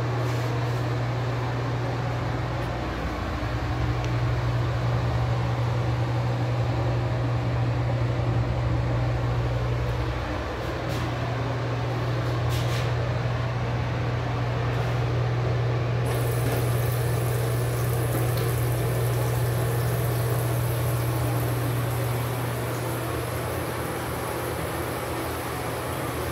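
Steady low hum with a rushing air noise over it, typical of a ventilation fan running in a small tiled room.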